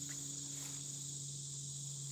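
Steady, high-pitched chorus of field insects such as crickets, with a low steady hum underneath.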